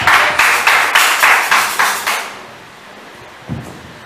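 Rhythmic hand clapping, about three to four claps a second, that stops about two seconds in. A single low thud follows near the end.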